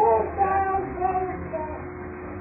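A baby's voice cooing and babbling in drawn-out, wavering tones, loudest in the first half second and trailing off.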